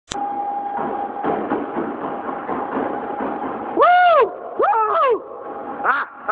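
A high-speed treadmill running flat out at about 22 mph, with a steady motor whine, belt noise and the quick footstrikes of a sprinter. About four seconds in, loud rising-and-falling yells break out, then come again twice more.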